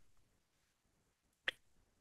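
Near silence in a pause between sentences, broken by one short, sharp click about one and a half seconds in.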